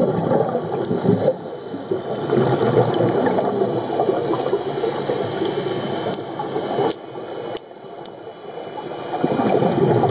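A scuba diver's regulator exhaust bubbles gurgling, heard underwater. The bubbling dies down about seven seconds in and builds again near the end, like a breath cycle.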